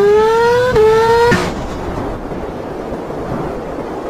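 Motorcycle engine revving, its pitch rising steadily for about a second and a half, then giving way to a steady rush of wind and road noise.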